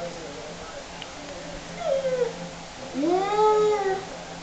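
A toddler's wordless vocal sounds: a short falling call about two seconds in, then a longer, louder call that rises, holds and falls near the end.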